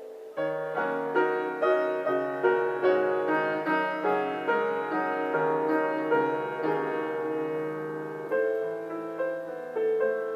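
Solo grand piano being improvised. A held chord dies away, then about half a second in a steady stream of notes begins, about two or three a second, over sustained bass notes, with a new low chord near the end.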